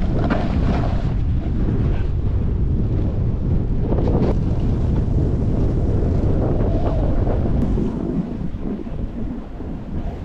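Wind rushing over a camera's microphone as it is carried downhill on skis, a loud steady rumble that eases off about eight seconds in.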